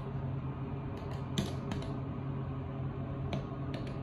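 A few sharp clicks of Kone Innovation Delta car buttons being pressed, over a steady low hum inside the elevator car.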